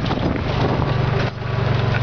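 Golf cart running along at speed, a steady low drone that eases off briefly about halfway through, with wind buffeting the microphone.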